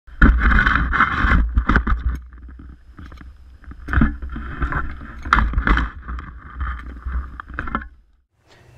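Shovel digging into soil and dirt being tossed, heard from a camera mounted on the shovel itself: rushing scrapes, several sharp knocks of the blade, and a steady low rumble of handling and wind on the microphone, cutting off suddenly near the end.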